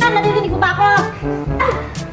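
Background music from a television sitcom, with about three short, high, yelp-like calls over it.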